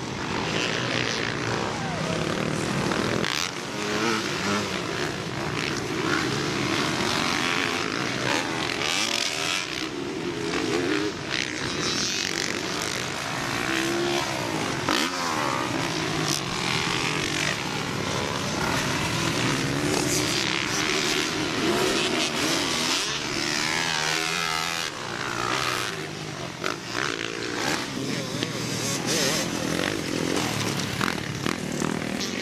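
Several motocross dirt bikes riding a track, their engines revving up and down through corners and jumps. The engines overlap, each one's pitch rising and falling again and again.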